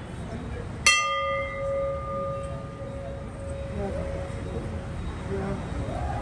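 A hanging brass temple bell struck once about a second in, its ringing fading away over the next few seconds, over a low murmur of voices.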